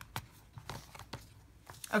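Paper planner inserts being handled on a six-ring binder's metal rings: soft paper rustling with a few light clicks.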